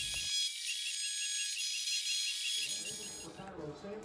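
Bridgeport vertical mill's endmill taking a light dry finishing cut in a cast iron Dana 60 axle housing: a steady high-pitched whine made of many tones, which stops about three and a half seconds in.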